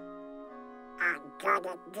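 Cartoon orchestral score holding soft sustained notes; about a second in, Donald Duck's quacking voice breaks in with a few short loud bursts as he yawns.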